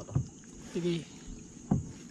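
Wet fishing net being hauled by hand over the side of a small boat, with water splashing and two short knocks against the boat's side, one near the start and one late on.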